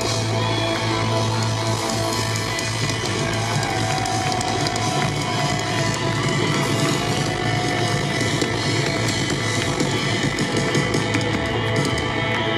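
Live band with electric guitars and drums playing amplified music through a stage PA, heard from within the crowd.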